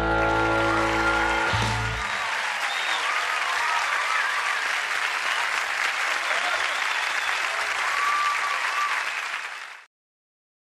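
A country band's final held chord rings and stops about two seconds in, giving way to a studio audience applauding and cheering. The applause cuts off suddenly just before the end.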